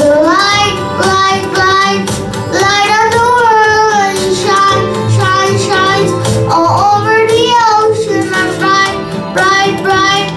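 A young boy singing a song into a microphone, in phrases of gliding, wavering pitch separated by short breaths.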